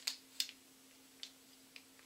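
A few light clicks and ticks of small charms and their packets being handled, the sharpest about half a second in, over a faint steady hum.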